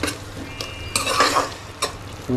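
A metal spoon stirring and scraping frying onion and tomato paste around a steel pan, with irregular scrapes and clinks against the metal over a low sizzle.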